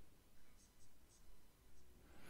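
Near silence: room tone with very faint, muffled speech from a man's voice.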